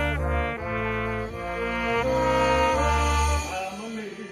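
Live big-band brass section, trumpet in the lead, playing a loud passage of changing chords over a bass line. The band stops together about three and a half seconds in.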